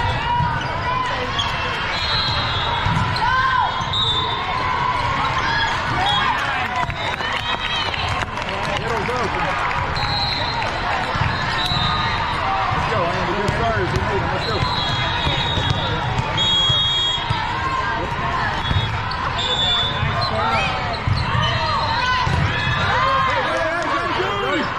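Busy hall full of volleyball courts: steady chatter of many voices, volleyballs being hit and bouncing on the hard floor, shoe squeaks, and several short referee whistle blasts from nearby courts.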